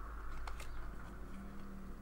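Faint handling of a stack of Pokémon trading cards: a card is slid off the stack and moved, with a few light ticks, over a low steady hum.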